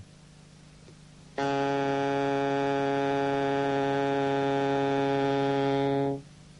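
Saxophone sounding its lowest note, low B-flat, fingered with the bottom key under the little finger. It is one long, steady note that starts sharply about a second and a half in and is held at a single pitch.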